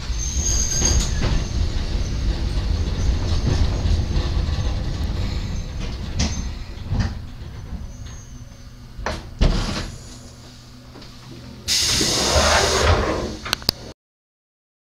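Hakone Tozan Railway electric train heard from the driver's cab, running slowly over the station points with a low rumble and occasional clicks from the wheels, the rumble dying away as it comes to a stop. About twelve seconds in, a loud hiss of released compressed air lasts about a second, followed by a couple of sharp clicks.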